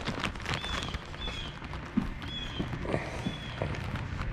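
Footsteps and handling knocks as someone walks across a porch. A short, high, slightly falling chirp repeats about once a second.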